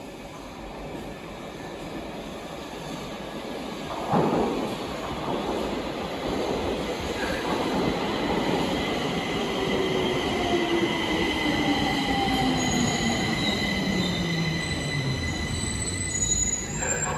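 Stockholm metro train arriving at an underground station platform, its rumble growing steadily louder as it approaches, with a brief sudden loud rush about four seconds in. In the second half its motor whine falls steadily in pitch as the train slows and brakes to a stop.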